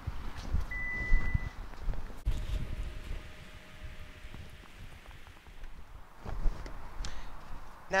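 Toyota RAV4 power tailgate closing: a single steady electronic beep about a second in, then a faint steady hum from the tailgate motor as it lowers. Low rumbling noise runs throughout.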